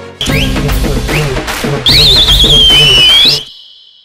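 Programme jingle between news items: music with a beat and quick rising whistle slides, then a loud, warbling high whistle about two seconds in that settles to a held note and cuts off suddenly.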